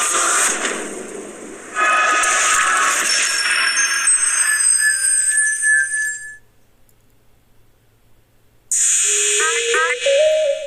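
Animated logo sting from the end of a video: a rushing whoosh, then a second whoosh about two seconds in with shimmering high tones that ring on and fade out around six seconds in. After a short quiet gap, another rushing sound with a held voice-like note starts near the end.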